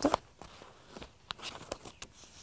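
Sheets of printed paper being handled, giving a few short, soft crinkles and taps scattered through an otherwise quiet moment.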